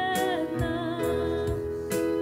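Slow gospel song: a woman singing held notes with vibrato over sustained keyboard chords.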